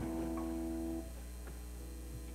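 A guitar chord struck once at the start and left to ring for about a second before it is stopped, over a steady electrical hum from the stage amplification.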